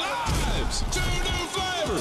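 A TV commercial soundtrack: music with a heavy low beat under excited shouting voices, and a long falling sound effect near the end.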